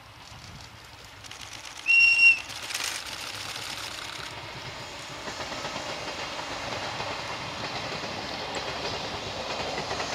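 A Japanese electric locomotive's high-pitched whistle gives one short blast. Then the locomotive-hauled train of old passenger coaches rolls past, its wheels clattering on the rail joints, growing louder and then holding steady.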